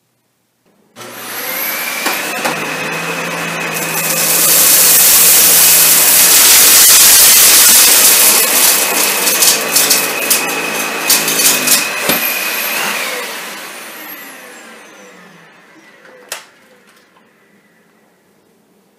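Dyson DC65 Animal upright vacuum with the brush bar on, switched on about a second in and pushed in one pass over carpet strewn with lentils, beans and Fruit Loops. It runs loudest with a steady motor whine and rattling clicks of debris being picked up. It is switched off near 13 s and winds down with a falling whine, followed by a single click.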